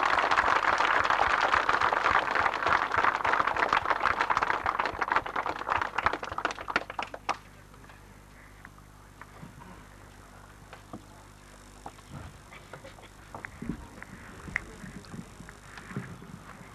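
A crowd applauding, a dense patter of many hands clapping that dies away about seven seconds in. Afterwards only faint scattered knocks and a few low thumps, as of a microphone being handled.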